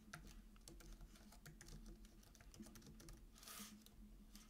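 Faint typing on a computer keyboard: an irregular run of quick key clicks as a search phrase is typed, with a brief soft rush of noise about three and a half seconds in.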